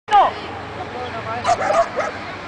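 A dog giving excited high yips and barks: one sharp, loud yelp falling in pitch right at the start, then a quick run of short yips about a second and a half in.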